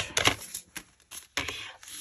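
A few light clicks and taps of a plastic diamond-painting drill tray being handled and set down on a table.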